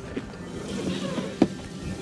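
Sliding side door of a Mercedes Sprinter van being pulled along its track to close, with a sharp click about a second and a half in, against a steady rush of wind noise.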